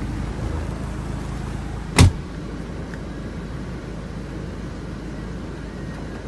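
Hyundai Terracan's common-rail diesel engine idling steadily, heard from inside the cabin, with one sharp thump about two seconds in.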